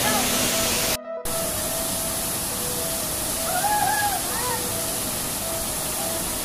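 Waterfall pouring into a pool: a steady rushing hiss of falling water. It cuts out for a moment about a second in.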